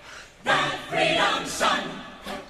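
Musical-theatre ensemble chorus singing short, separate sung bursts about half a second apart, starting about half a second in, some with sharp hissy consonants.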